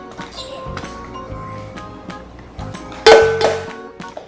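Crinkling and small clicks of a foil wrapper being peeled off a chocolate Easter egg and the plastic surprise capsule inside it being handled, over light background music. A louder sudden sound comes about three seconds in.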